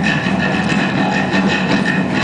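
Live rock band playing loud electric guitars and drums.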